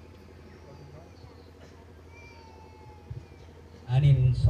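A lull in an amplified gathering: a steady low electrical hum, typical of a public-address system, with faint voices in the background. A man's speech through the loudspeakers starts loud right at the end.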